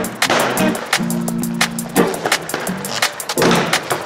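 Aggressive inline skate wheels rolling on a concrete floor and grinding along ledges, under an electronic music track with ticking percussion and held synth chords about a second in.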